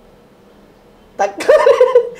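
A short hush, then about a second in a person's voice breaks in with a loud, high, wavering warble, an exaggerated vocal sound rather than clear words.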